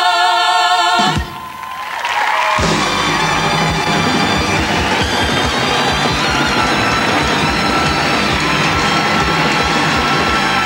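A woman singing one long held note over a live Latin band, cut off about a second in. From about two and a half seconds a studio audience cheers and applauds over the band.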